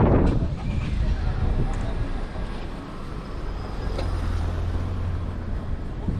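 Street ambience in a stone-paved lane: a person's voice at the start, then a low steady hum of a vehicle engine midway through, with a single short click about four seconds in.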